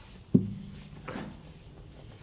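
A single sharp knock on an acoustic guitar, its open low strings ringing briefly and fading over about a second, then a short vocal sound.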